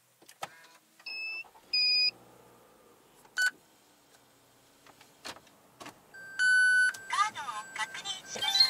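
Dashboard electronics of a second-generation Toyota Vellfire beeping as the car is switched on: two beeps about a second in, a short one a little later, and a longer tone near the end, followed by a voice.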